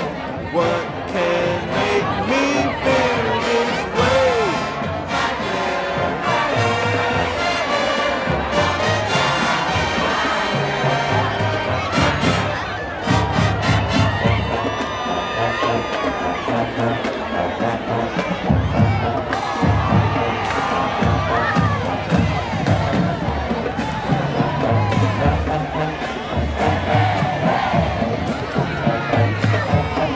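High school marching band playing, with drums and sousaphones, under a crowd cheering and shouting.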